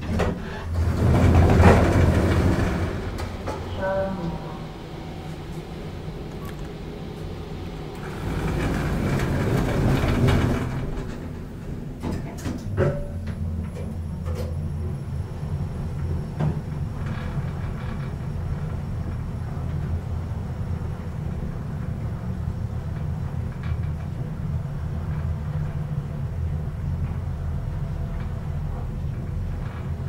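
Inside a 2012 KONE MonoSpace machine-room-less traction elevator car: a louder rush of noise in the first few seconds, typical of the car's sliding doors, and another louder stretch about eight seconds in. After that comes a steady low hum as the car travels down.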